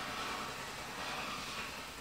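Water pump of a Tefal Express Anti Calc steam generator iron, a faint, steady pumping as it draws water from the tank into its boiler to make steam.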